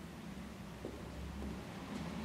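A steady low background hum with faint, even room noise, and a faint brief sound just under a second in.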